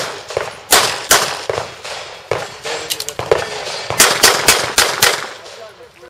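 Handgun fired in a practical pistol stage: about a dozen sharp shots, a few spaced singly and in pairs, then a fast string of five near the end.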